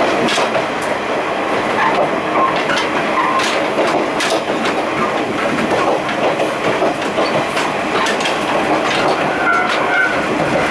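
KiHa 28 and KiHa 52 diesel railcars running, heard at the gangway between the cars. The steel gangway plates rattle and knock with many irregular metallic clicks over the steady running noise of the wheels on the rails. A few brief squeaks come in the first half and again near the end.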